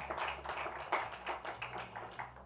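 Brief applause from a small audience: many hands clapping irregularly.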